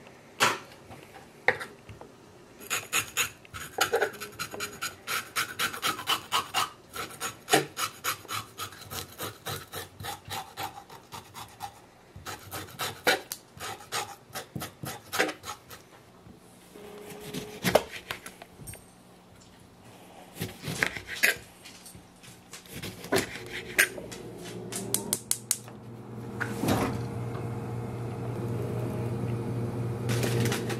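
Kitchen knife cutting and scraping fish on a wooden cutting board: runs of quick rasping strokes and taps as the flesh is filleted and the skin worked over. A steady low hum builds over the last few seconds.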